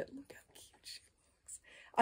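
A near-quiet pause holding a few faint, short whispered sounds.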